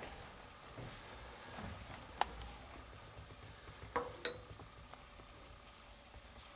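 Quiet room tone with a few light clicks: one about two seconds in and two close together about four seconds in, one of them with a brief ring.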